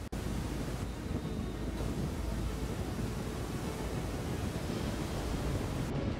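Steady rush of turbulent water as a breaking wave front surges along the shore, with wind noise on the microphone.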